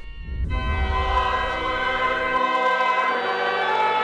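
Church choir singing in several voices, long held chords entering about half a second in. A low rumble sits under the first two seconds or so.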